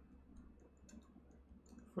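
Faint computer keyboard keystrokes, a scattered run of light clicks as a line of code is typed, over a low steady hum.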